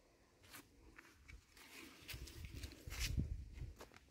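Faint footsteps and scuffing on dry, leaf-strewn soil, with a few soft thumps, the loudest about three seconds in.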